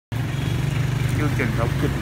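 A small engine running steadily at idle, a constant low hum under a voice that starts speaking about a second in.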